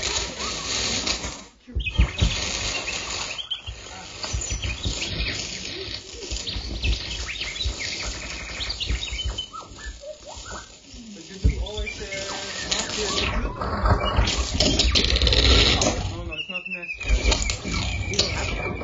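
Live electronic noise improvisation from laptop instruments: dense, glitchy noise textures that cut out abruptly a few times, with chirping pitch glides in the middle and a wavering high tone near the end.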